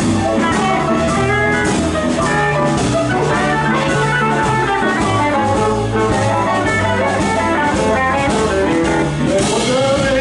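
Live blues band playing an instrumental passage, with upright piano, guitar, bass and drums together.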